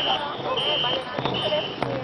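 A pacing whistle blown in short, even blasts, about one every three-quarters of a second, setting the paddle stroke for the crew of a Khmer ngo racing boat. Beneath it are the crew's shouting voices and, in the second half, sharp knocks in time with the strokes.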